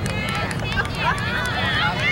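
Several spectators' voices shouting and calling out at once, high and excited, over a low steady rumble.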